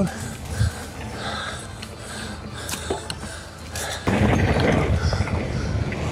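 Devinci Atlas carbon mountain bike rolling fast down a dirt singletrack, with tyre and trail noise and a knock shortly after the start. The rumble grows clearly louder about four seconds in as the bike speeds over rougher ground.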